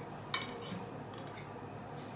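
A metal spoon clinking and scraping in a stainless-steel tin while scooping a moist corn and tomato mix: one sharp clink about a third of a second in, then a couple of fainter taps.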